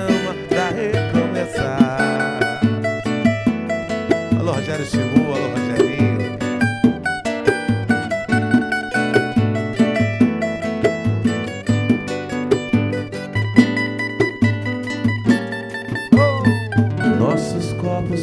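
Live samba band playing an instrumental passage: plucked acoustic guitar and other strings carry the melody and chords over a pandeiro and a large hand drum keeping a steady samba beat.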